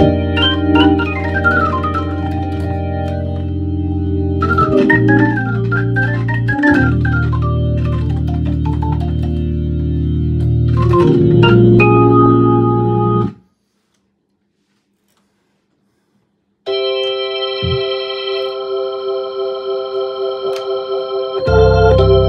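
Hammond B3 organ being played: low bass notes and sustained chords under fast right-hand runs, cutting off suddenly about 13 seconds in. After about three seconds of silence a held chord comes in, pulsing in loudness about four times a second, with low bass notes joining near the end.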